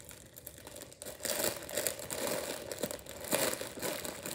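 Crinkly plastic packaging rustling and crinkling as it is handled, starting about a second in.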